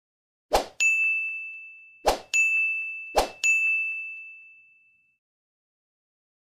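Animation sound effects for on-screen social-media buttons: three times, a short sharp hit followed by a bright bell-like ding that rings and fades, about a second apart. The last ding dies away about five seconds in.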